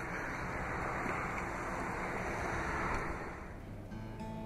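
A steady rushing noise with no clear pitch, fading away near the end.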